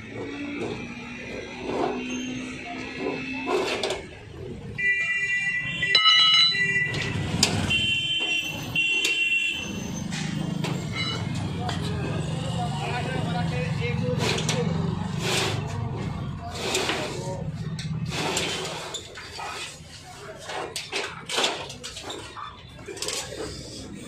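A metal rolling shutter being worked open, with clanks and rattles of its slats and a low rumble as it moves. A few short high-pitched tones sound about five to ten seconds in. Voices talk throughout.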